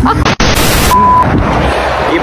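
Loud wheezing laughter that cuts off abruptly, followed by a short burst of loud noise and a single short high-pitched bleep tone about a second in.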